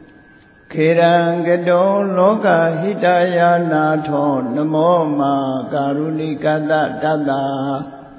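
A man chanting Pali verses in a sustained, melodic recitation, starting after a short pause about a second in.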